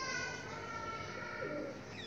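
Bird calls, including a short low falling call about one and a half seconds in.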